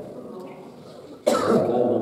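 A man's voice over a microphone: a pause of about a second, then a sudden loud start as his speech resumes near the end.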